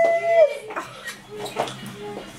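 A baby's long, high-pitched squeal, held for about half a second and then sliding down in pitch, followed by a few softer, shorter vocal sounds.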